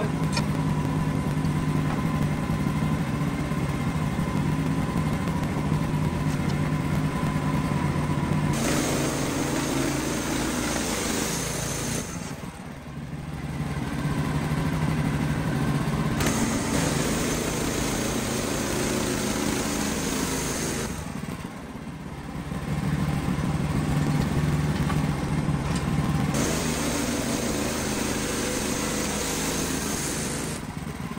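Wood-Mizer LX55 portable band sawmill running, its small engine driving the band blade as it saws a pine log. The sound is steady and loud, dropping briefly twice, about a third and two thirds of the way through.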